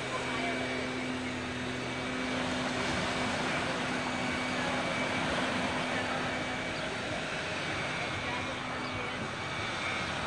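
A distant engine drones steadily over small waves washing on a sand beach and faint voices of swimmers; the drone fades out near the end.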